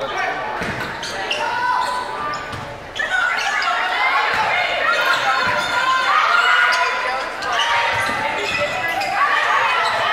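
Volleyball rally in a gym: the ball thumping off players' arms and hands amid players calling out and spectators shouting, echoing in the large hall. The shouting gets louder about three seconds in.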